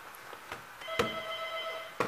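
Electronic doorbell buzzer sounding one steady tone for about a second, starting a little under a second in, with a sharp click just after it begins.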